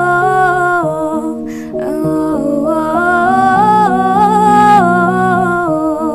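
A woman humming the melody in long held notes over a soft instrumental backing track of sustained chords.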